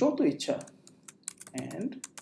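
Typing on a computer keyboard: a run of quick, light key clicks, mostly in the second half, with a voice speaking briefly at the start.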